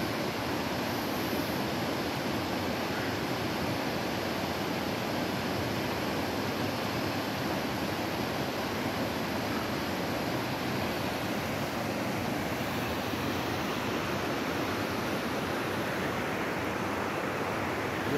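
Steady rushing of a fast mountain river tumbling over rocks, an even white-water roar with no breaks.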